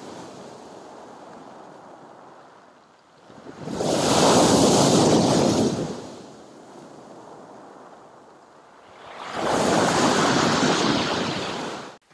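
Sea waves breaking on a pebble beach and against a concrete pier footing. Two big waves crash loudly, about four and nine seconds in, with a quieter wash of surf between them.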